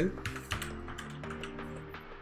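Computer keyboard being typed on, a quick irregular run of key clicks entering a short word, over steady background music.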